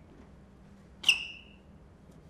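A single sharp, high-pitched squeak about a second in, typical of a sneaker sole on a hard stage floor as the walker stops and turns at the table; the rest is quiet room tone.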